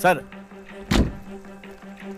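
A car door shutting: one heavy thump about a second in.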